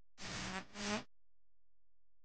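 Two short vocal sounds in quick succession, about a second in, from a cải lương opera recording; the second one rises in pitch at its end.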